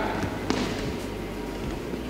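Room noise in a large gymnasium with a steady low hum, and a single sharp knock about half a second in.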